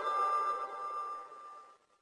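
A bell-like ringing tone, several pitches sounding at once, dying away over about a second and a half into silence.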